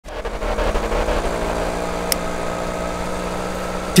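An open-top jeep's engine running steadily, with a short click about halfway through.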